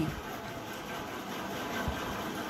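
Steady low background noise of a small room, with a soft low thump near the end.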